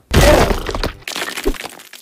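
Cartoon sound effect of rock breaking apart: a loud crash just after the start, a second crack about a second in and a short low thud at about one and a half seconds, then small crumbling bits that fade away.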